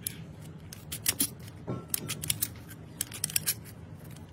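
Steel scissors snipping small pieces off a thin metal strip: a series of short, sharp snips at an irregular pace.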